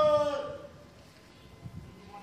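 The end of a man's long, drawn-out shouted parade command, one held note sinking slightly in pitch, which stops about half a second in and leaves faint open-air background.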